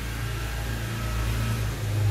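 A steady low hum with a faint hiss.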